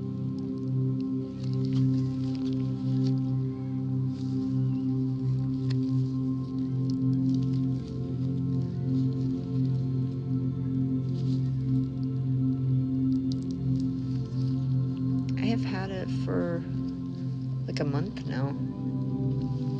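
Steady ambient background music with sustained tones. Beneath it, faint small squishes and clicks from gloved fingers squeezing a soft silicone pimple-popping toy.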